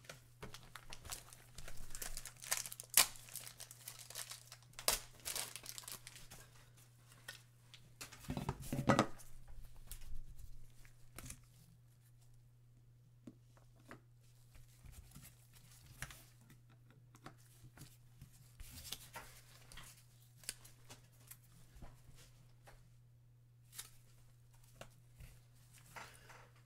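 Gloved hands handling trading cards and clear plastic card holders: rustling, crinkling and small clicks, busiest in the first ten seconds with the loudest handling noise about nine seconds in, then sparser. A steady low hum runs underneath.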